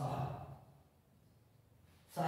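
A man's short, breathy, voiced sigh close to the microphone, lasting about half a second at the start, followed by quiet room noise.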